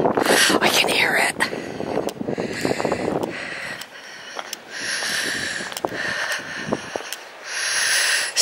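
Footsteps crunching on a stony, pebbly path, irregular clicks of stones underfoot, with a steady rushing hiss that comes and goes in the second half.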